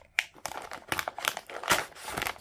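Clear plastic packaging bag crinkling as it is handled and pulled open, a run of irregular sharp crackles.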